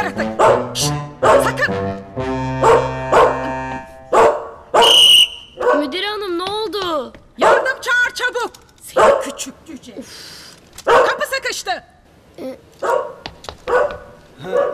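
Light comic music for the first few seconds, then a small dog barking in short yaps several times, spaced unevenly.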